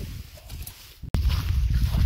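Quiet open-air ambience that breaks off abruptly about halfway through, followed by wind buffeting the microphone in a loud low rumble.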